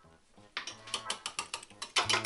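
A fork beating a raw egg in a ceramic bowl, its tines clicking rapidly against the bowl from about half a second in.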